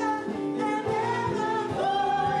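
Gospel praise team singing into microphones, with long held and sliding notes, over instrumental accompaniment with a steady beat.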